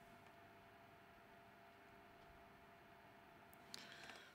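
Near silence: the cooling fans of a Manbily CFL200Bi bi-colour COB LED studio light running at 100% output give only a faint, steady whir with a few thin steady tones, even with the light lifted close to the microphone.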